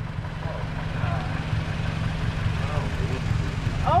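Car engine idling, a steady low rumble.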